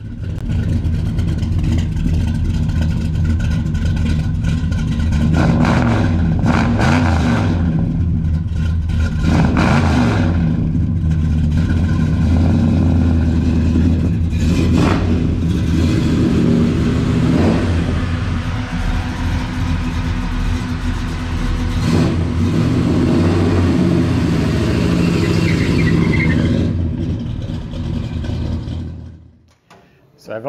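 Modified 327 small-block V8 with coated headers running and pulling the car away. The engine speed rises and falls several times, and the sound cuts off shortly before the end.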